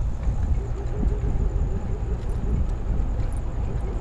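Wind rumbling steadily on the microphone of a camera on a moving e-bike, with road noise from riding over asphalt.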